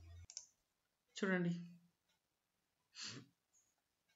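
A single sharp mouse click about a quarter second in, starting video playback, followed by two short voice sounds: one pitched and falling, one breathy.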